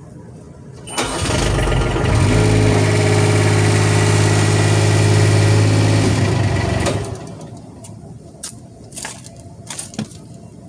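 A motor or engine starts about a second in and runs steadily with a low hum for about five seconds, then winds down and stops; a few faint knocks follow.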